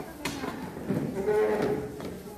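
Voices in a large room, with one drawn-out call held on a steady pitch for about half a second in the second half, the loudest sound here.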